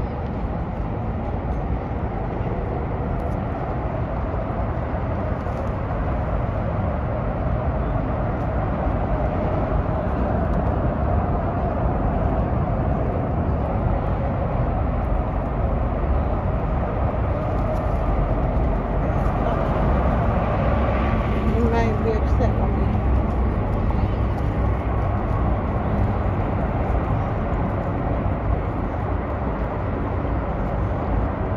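Steady rumble of city road traffic, with faint indistinct voices.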